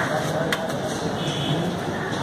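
Voices murmuring faintly over a steady outdoor background hum, with a single sharp click about half a second in.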